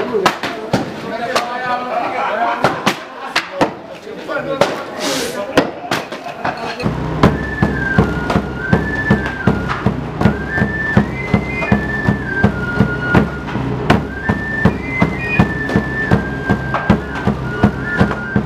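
Axes chopping wood, sharp irregular chops. About seven seconds in, a caja drum and a pincullo flute start up, a high stepping flute melody over a steady drumbeat, while the chopping goes on.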